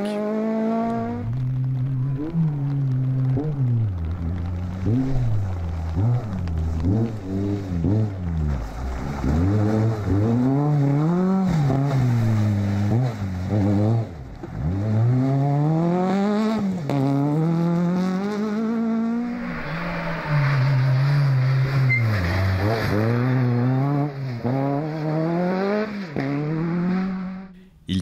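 Off-road rally car engines revving hard, the pitch climbing and dropping back over and over with throttle and gear changes, across several passes. The sound fades out near the end.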